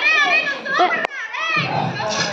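High-pitched excited cries and laughter from a group of women, with one sharp click about a second in.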